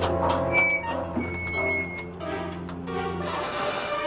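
Orchestral film score with sustained strings over a low held note that drops out about three and a half seconds in, as the music changes. A few short, sharp clicks sound over it in the first three seconds.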